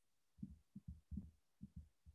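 Near silence, broken by about seven faint, short low thumps at irregular intervals.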